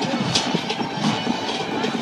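Marching band playing across the stadium, its drums beating a steady rhythm of about three strokes a second, mixed with crowd chatter in the stands.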